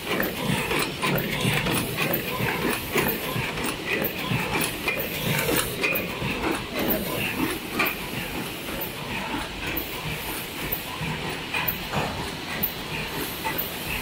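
Paper cup forming machine with a bottom direct-feeding mould, test running at about 68 cups a minute: a continuous busy clatter of rapid mechanical clicks and knocks, with hissing.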